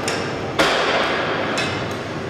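Cable machine's weight stack clanking with each rep: a sharp clank about half a second in and another a second later, each ringing on briefly.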